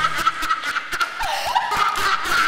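Theatre audience laughing and cheering, with scattered, irregular hand claps.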